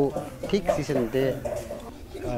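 A man speaking in the local language.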